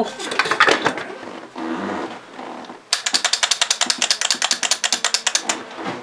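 Handling noise from parts on a workbench, then, about halfway through, a screw being driven down with a rapid, even run of ratcheting clicks, about ten a second, for nearly three seconds.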